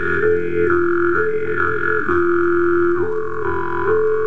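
Jew's harp (jaw harp) played with a steady buzzing drone. The player's mouth picks out a melody of overtones above it, stepping back and forth between two notes every half second to a second.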